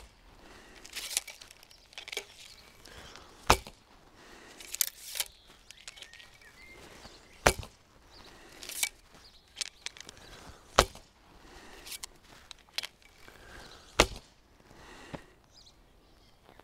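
Assyrian bow shot four times, roughly every three to four seconds. Each shot is a sharp snap of the string together with the arrow striking a coiled straw target, with softer rustles in between.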